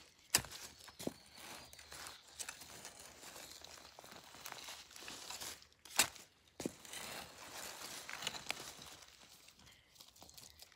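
Garden fork being driven into soil among dry leaves, with scraping, crunching and rustling of earth and leaves. There are a few sharp strikes, the loudest just after the start and about six seconds in.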